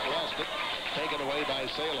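Gymnasium crowd noise during live basketball play: many overlapping voices over a steady din, with players running on the hardwood court.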